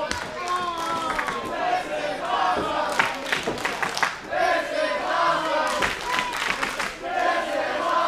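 Small crowd of wrestling fans shouting and chanting together, with bursts of hand clapping partway through.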